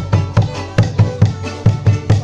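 Lively folk music: a violin and plucked strings over a steady drum beat, about two and a half beats a second.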